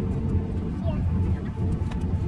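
Steady low rumble of a jet airliner's cabin as the aircraft taxis on the ground, with faint voices in the background.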